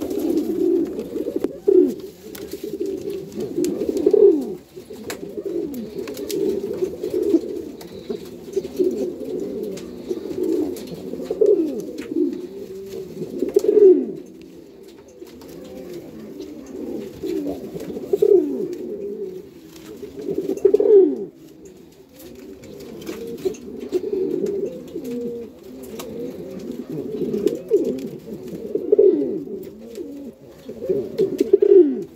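Several male Rafeño pigeons cooing without pause, their low coos overlapping, with louder swelling phrases every few seconds. The cooing is that of males in breeding condition.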